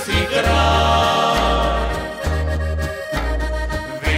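A folk ensemble playing live, with accordion, acoustic rhythm guitar and a double bass (berda) sounding one low held note after another, and male voices singing in harmony.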